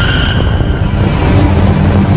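A loud, steady, low vehicle rumble, with two high steady tones that fade out about a second in.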